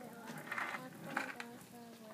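A young child's voice singing softly in long held notes.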